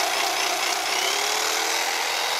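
Electric carving knife running steadily in the air, not cutting anything.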